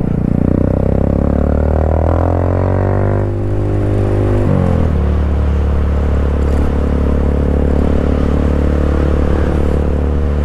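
Honda Grom's small single-cylinder engine heard while riding. The engine note falls steadily over the first few seconds as the bike slows, rises sharply about four and a half seconds in, then holds a steady cruising drone.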